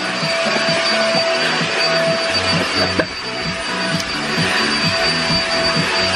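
Canister vacuum cleaner running steadily as its floor nozzle is worked over a fabric couch, the motor's noise carrying a steady high whine.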